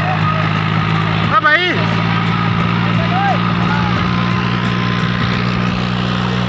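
John Deere 5105 tractor's three-cylinder diesel engine running steadily under load while pulling a harrow through ploughed soil. A man shouts briefly about a second and a half in.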